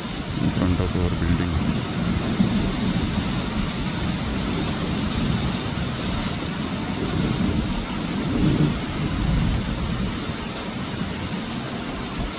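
Light rain falling steadily on a wet road and foliage, an even hiss, with a low rumble underneath that swells about eight to nine seconds in.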